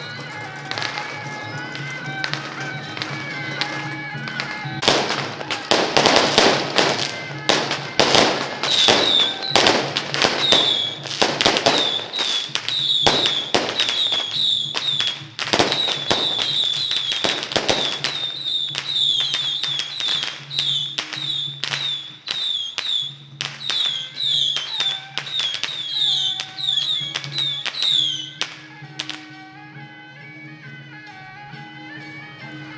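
A string of firecrackers crackling in rapid, irregular bursts from about five seconds in, heaviest in the first half, over traditional procession band music with a steady droning wind instrument.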